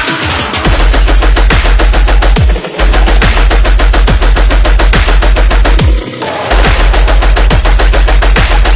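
Hard dubstep drop: very rapid, machine-gun-like stuttering hits over heavy sub-bass, with a falling pitch sweep about every second. The track cuts out briefly about two and a half seconds in and again about six seconds in.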